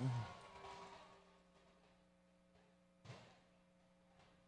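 Near silence: a faint steady hum, with a single soft knock about three seconds in.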